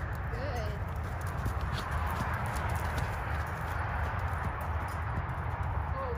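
A ridden horse's hoofbeats on soft sand footing: dull, muffled thuds of a steady gait, heard over a constant low noise.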